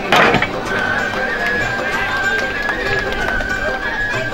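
A loud, sudden crash right at the start as a karate breaking strike smashes material on a stand. It is followed by one long, steady high-pitched tone held for the rest of the time, over a background of voices.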